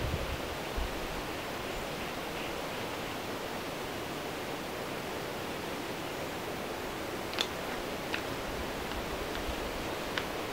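Steady background hiss with no distinct source, broken only by a couple of faint low bumps in the first second and two faint short clicks near the end.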